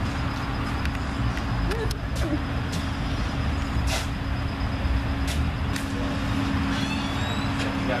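Steady low mechanical rumble with a constant hum, like an engine or machinery running, with a few light clicks scattered through it.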